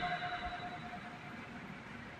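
The last held note of a man's Quran recitation dying away through the sound system's echo over about the first second, followed by faint room hiss.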